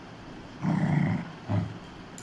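A dog growling twice: a growl of about half a second, then a short one.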